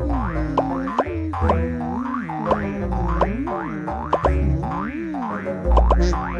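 Cartoon music with springy boing sound effects: quick pitch glides that swoop up and down several times a second over a pulsing bass.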